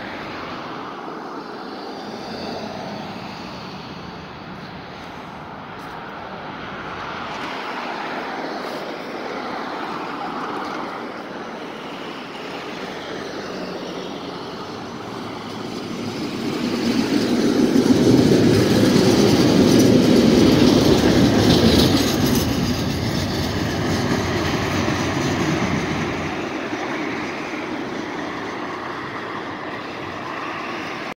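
Two-car Tatra T3 tram (MTTA-modernised) pulling away from the stop and passing close by, its motors and wheels on the rails growing loudest about twenty seconds in, then fading as it runs off down the track.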